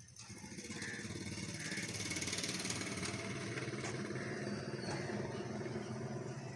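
A motor running steadily, growing louder over the first couple of seconds and then holding.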